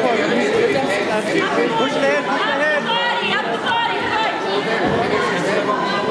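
Chatter of several overlapping voices, spectators and coaches talking and calling out at once around a wrestling mat, with no single voice standing clear and no break.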